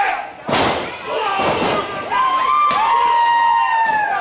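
Pro wrestling strikes landing in a small hall: a loud smack about half a second in and another near the three-second mark, with audience members shouting and a couple of drawn-out yells over them in the second half.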